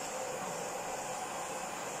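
Vacuum cleaner running steadily, its brush nozzle being passed over a cat's coat.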